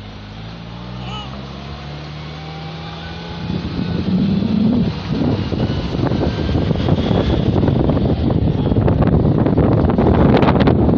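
A vehicle's engine running steadily, then rising in pitch and getting louder about three and a half seconds in as the vehicle pulls away. After that comes loud rushing wind and road noise with scattered rattles and knocks.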